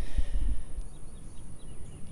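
Outdoor ambience: a few faint bird chirps about a second in over an uneven low rumble and a steady high hiss.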